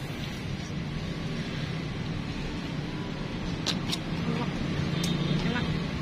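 Steady hum of road traffic, with a few short faint clicks in the second half.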